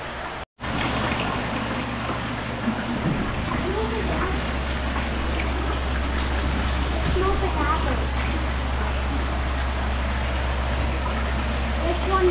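Maple sap gushing from a vacuum tubing line into a cloth-lined stainless steel tank: a steady splashing rush, pushed out by the vacuum pressure from the tapped trees. The sound drops out briefly about half a second in, and after that a low steady hum runs beneath the rush.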